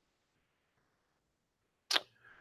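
Near silence: a pause in a man's speech through a webinar audio feed, ended just before the close by one brief, sharp, hissy sound.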